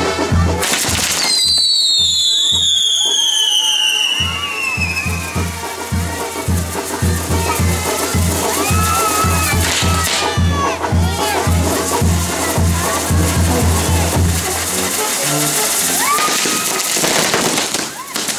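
Castillo firework-tower fountains hissing and crackling, with a falling whistle from a firework about a second in. Loud music with a pulsing bass beat and voices run underneath.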